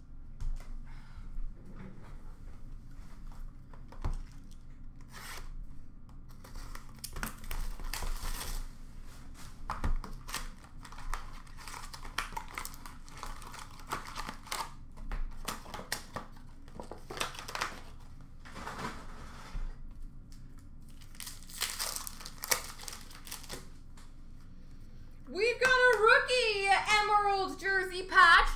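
Hockey card pack wrappers being torn open and crinkled by hand, in scattered short rustles. A voice starts speaking near the end.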